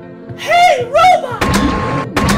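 Background music under a short wordless voice, then a sudden loud thud about one and a half seconds in that leaves a heavy rumbling noise.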